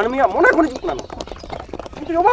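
A man speaking, with scattered short clicks behind the voice.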